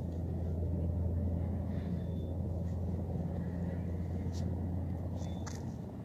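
Steady low rumble of a motor vehicle engine running close by, swelling slightly and then easing. A couple of faint rustles of book pages being turned near the end.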